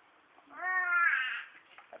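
A baby gives one short whiny cry, about a second long, rising slightly in pitch.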